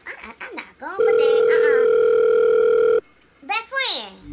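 A steady electronic telephone tone held for about two seconds and then cut off, with short bits of a woman's voice before and after it.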